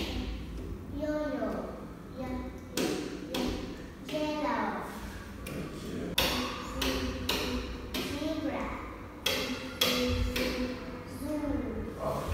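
A recorded children's phonics chant playing: a chanting voice over a beat of sharp knocks about every half second, the knocks strongest in the second half.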